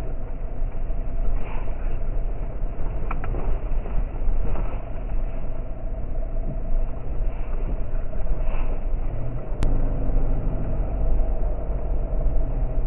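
Cabin sound of a vehicle driving slowly over a rough gravel road: a steady engine and road rumble, with a few knocks and rattles from bumps and one sharp click late on.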